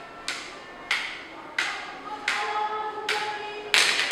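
Swords clashing in a staged fight: six ringing metallic clangs, about one every 0.7 s, the last the loudest.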